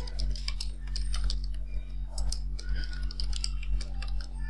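Typing on a computer keyboard: quick, irregular keystroke clicks with short pauses between bursts of keys. A steady low electrical hum sits underneath.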